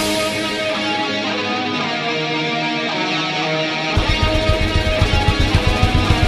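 Heavy metal band recording in a breakdown: the drums and bass drop out, leaving the guitars playing a melodic line on their own. About four seconds in, the drums and bass come back in with a fast, even beat.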